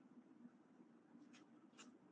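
Near silence: room tone with a faint low hum, and two faint, brief scratchy sounds about one and a half seconds in.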